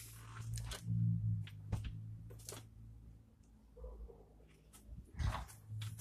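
Handling noise from a camera being carried and moved: scattered soft knocks and rustles over a low steady hum.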